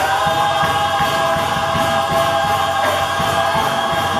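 Church choir singing, holding one long chord in several voice parts.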